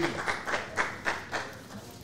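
A few people clapping, about four claps a second, fading out within the first second and a half.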